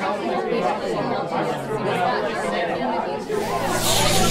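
Several voices talking over one another, a jumble of speech snippets. A rising whoosh swells up near the end.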